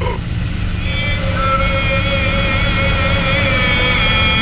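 Car driving away along a street, with a steady low engine and road rumble. About a second in, sustained musical notes come in over it and are held to the end.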